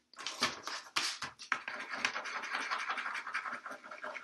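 A pen scribbled rapidly back and forth on paper, a quick run of scratchy strokes starting just after the start, to get a purple pen that won't write to start flowing.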